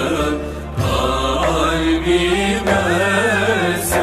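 Male voice singing a Turkish naat in makam Rast: long, ornamented melismatic lines over a steady low drone, with a brief dip less than a second in.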